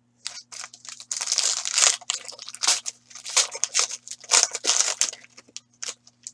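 Foil wrapper of a trading-card pack being torn open and crinkled by hand, in a run of irregular crackling rustles, over a faint steady electrical hum.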